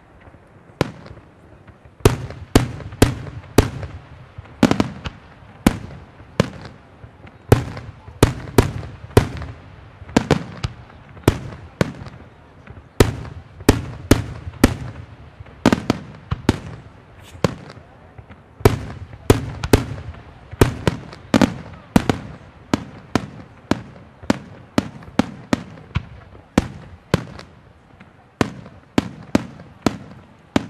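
Aerial firework shells bursting in a rapid barrage of sharp bangs, about two a second, beginning about two seconds in after a couple of isolated reports.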